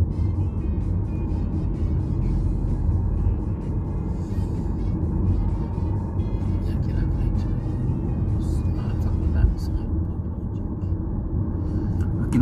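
Steady low road rumble inside a moving car's cabin, from the engine and tyres on the road, with faint music under it.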